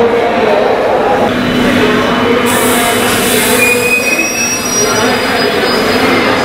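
Indian Railways passenger train at a station platform: a steady rumble of rail noise, with thin high-pitched wheel squeals briefly about four seconds in.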